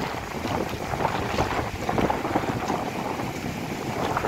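Wind buffeting the microphone over the wash of small waves breaking on a sandy shore.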